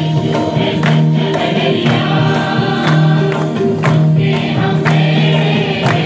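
Hindi Christian praise and worship song: voices singing together over an instrumental backing with a steady percussive beat.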